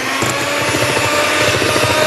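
Electric hand mixer running at high speed, beating a creamed butter-and-sugar batter as egg and vanilla go in; a steady motor whine over the whir of the beaters. The speed is high enough that the batter is about to splatter.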